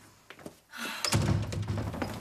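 A wooden door shutting with a thunk about a second in.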